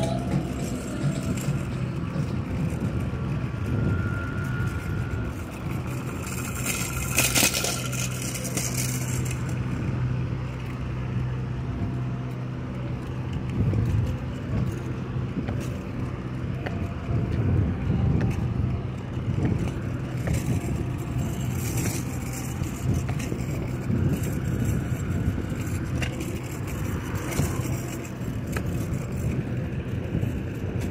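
Steady low motor-vehicle rumble with a constant hum, on a city street, with a few short noisy swells.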